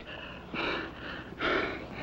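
A man breathing hard from exertion: two heavy, noisy breaths about a second apart.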